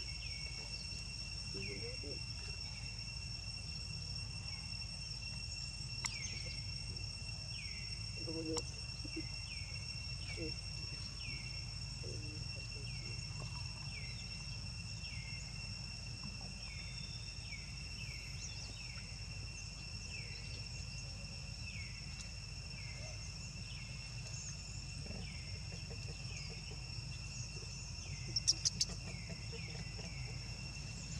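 Steady high-pitched drone of insects, with a series of short falling chirps repeated about once a second through the first half. There is a brief burst of sharp clicks near the end.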